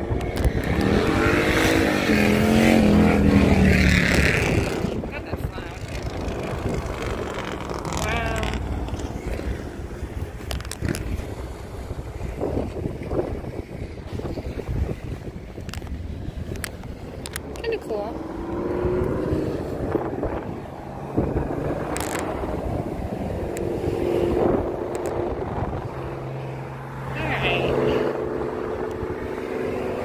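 Wind buffeting the microphone, with road traffic passing and a steady engine hum near the end.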